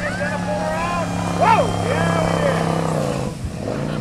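Motorboat engines droning steadily as racing boats speed by on the river, with people's voices and a loud shout over the drone about one and a half seconds in; near the end the engine tone drops.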